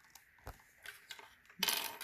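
Hard plastic parts of a McFarlane Spawn action figure clicking and clattering as a small weapon is fitted into its hand. There are a few light clicks, then a louder short rattle near the end.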